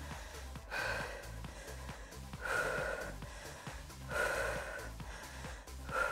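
A woman breathing with effort while holding a plank: four audible breaths, about one every second and a half, over quiet background music with a beat.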